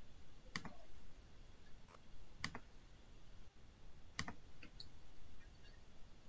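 A handful of faint, sharp clicks at a computer, spaced unevenly a second or two apart, with a quick double click about four seconds in, as a file is opened and the screen shared.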